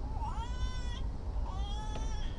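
Two high-pitched whining cries from a small child, the first rising and then held for about a second, the second shorter near the end, over the low steady rumble of a passenger train running.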